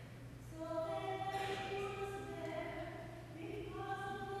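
Choir singing slow, sustained notes, resuming after a short breath about half a second in.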